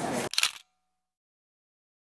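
A short camera shutter click about a third of a second in, cutting off into complete silence.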